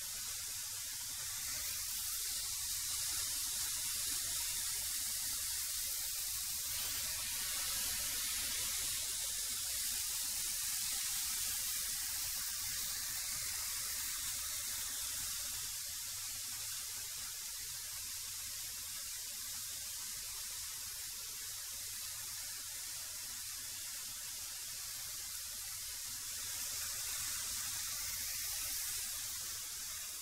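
A benchtop thickness planer running while lumber is planed to thickness, heard as a steady, hissy whoosh. It swells slightly about two seconds in and again near the end.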